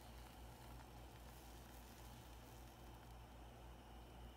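Near silence: room tone with a faint steady hiss and low hum.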